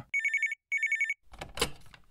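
Telephone ringing: two short trilling rings, each about half a second, with a brief gap between them.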